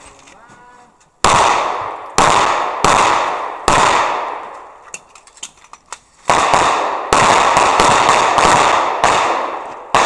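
Smith & Wesson M&P9 9mm pistol fired in a USPSA stage: about four shots spaced roughly a second apart, a pause of about two seconds while the shooter moves to the next position, then a faster string of about six more. Each shot is sharp and leaves a ringing echo that dies away before the next.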